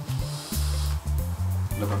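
Background music with a steady repeating bass beat, over a soft hiss of a vape being drawn on: a VOOPOO pod vape firing its 0.15-ohm PnP-VM6 mesh coil.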